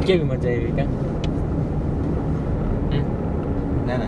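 Steady low rumble of road and engine noise heard inside a moving car's cabin, after a brief spoken word at the start, with a faint click about a second in.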